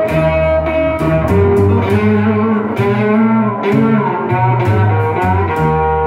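Hollow-body electric archtop guitar picking a blues instrumental line over upright bass, played live.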